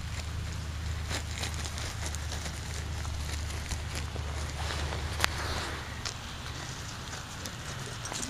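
Steady low rumble with scattered light clicks and rustles of movement on snowy grass, and one sharp click about five seconds in; the rumble eases off after about six seconds.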